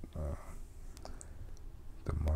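A few small sharp clicks about a second in, after a brief low vocal sound near the start, over a steady low background hum.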